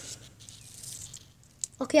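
Quiet handling noise from the phone as it is moved close to the ground: faint rustling and a few soft clicks, then a voice says "okay" near the end.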